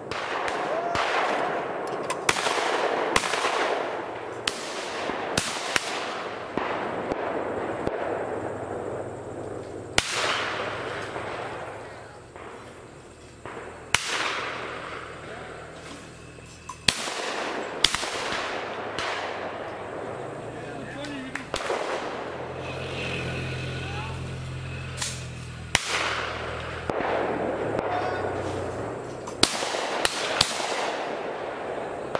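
Shotgun shots at a clay target range: about fifteen sharp reports, irregularly spaced, each trailing off in an echo, some near and some farther off. A low steady hum runs under the second half.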